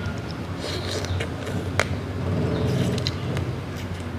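Eating a blue crab salad by hand: a single sharp crack of crab shell a little under two seconds in, with soft mouth and picking sounds, over a low steady background rumble.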